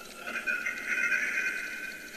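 A spirit box giving out a sustained, slightly wavering high electronic tone that comes up just after the start and holds steady.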